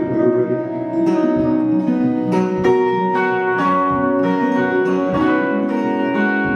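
Acoustic guitar and electric guitar playing together in an instrumental passage with no singing, plucked notes stepping through a melody.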